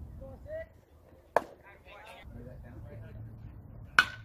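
Spectators chatter, broken by one sharp crack about a second and a half in. At the very end a metal baseball bat strikes the ball with a short ringing ping, a good hit.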